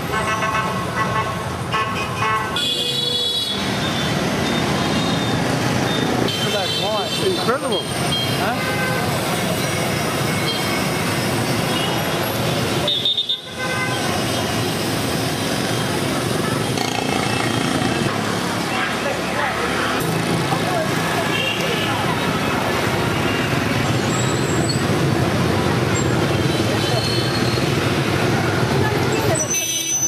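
Busy street traffic: motorbike and car engines running steadily with horns tooting several times, and voices in the street.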